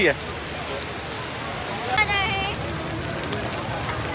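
Steady rain falling, an even hiss of rainfall on surfaces. A brief high-pitched wavering call cuts through about halfway through.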